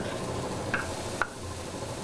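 Hamburger patties sizzling on a greasy flat-top griddle, a steady hiss with two short taps near the middle as more patties are laid down.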